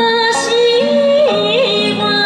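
A woman singing in Okinawan folk style into a microphone over a backing of sustained chords. Her voice holds a note, steps up, then dips back with a quick ornamental turn about a second and a half in.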